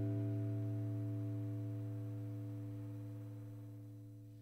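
Final chord of an acoustic guitar ringing out, fading slowly and evenly with no new strum.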